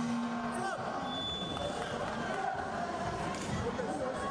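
A short, steady signal tone sounds right at the start for under a second, marking the end of a round, over the arena's crowd noise and shouting voices.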